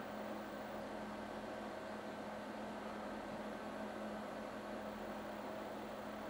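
Steady hiss with a constant low hum underneath, unchanging throughout, with no distinct events.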